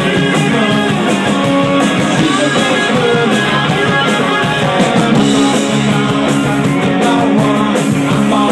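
A live rock band playing loud punk rock, with electric guitars and drums running steadily throughout.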